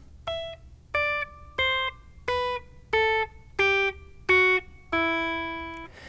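Clean electric guitar played fingerstyle on the high E string: eight single plucked notes, evenly spaced about a second and a half apart... descending an E natural minor scale from the 12th-fret E down to the open E, each note short and the last one left to ring for about a second.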